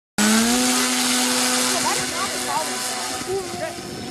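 The electric motor and propeller of an Apprentice RC trainer plane run up to a steady whine with a hiss of prop wash. The plane is on 3D-printed skis, taxiing on snow for takeoff, and the sound grows fainter over the last couple of seconds as it moves away.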